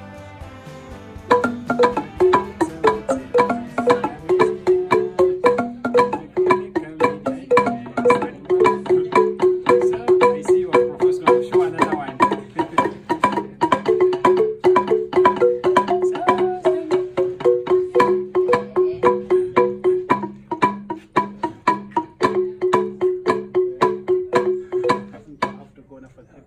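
African wooden-keyed xylophone with animal-horn resonators, played by two people with mallets. A fast, steady, repeating pattern of struck notes starts about a second in and thins out briefly about two-thirds of the way through.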